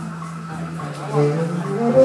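Live instrumental music: a slow melody of held and sliding notes over a steady low bass note. It softens in the first second and swells again about a second in.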